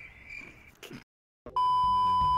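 Censor-style test-tone bleep sound effect, a loud steady single-pitched beep, starting about one and a half seconds in after a moment of dead silence. A faint high steady hum comes before it.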